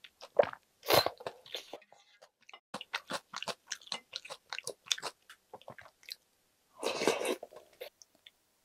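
Someone eating spicy jjamppong ramyeon from a wooden ladle: a slurp about a second in, then a run of quick, wet chewing clicks, and another long slurp of noodles and broth near the end.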